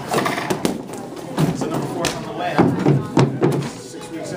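Background chatter of children's and adults' voices in a large room, with a few sharp knocks and taps.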